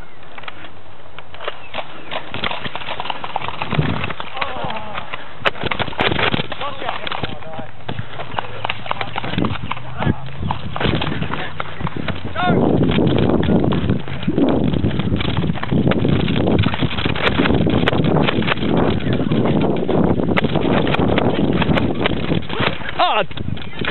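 Rhythmic footfalls of someone running on grass, with the handheld camera jostling. They get louder and more continuous about halfway through.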